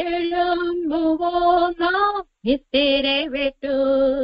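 A woman singing a slow Christian devotional song unaccompanied, holding long notes with vibrato, with short silent breaks between phrases.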